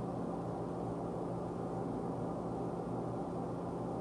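Steady low hum with a faint hiss in the background; no distinct sounds stand out.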